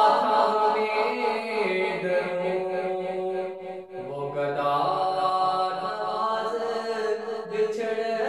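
A man's solo voice singing an Urdu kalaam in long held, slowly bending notes, with a brief pause for breath just before the middle, after which he comes in on a lower note.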